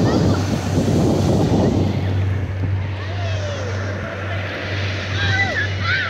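Ocean surf washing up the beach with wind on the microphone, loud at first and dropping away about two seconds in; faint voices after that.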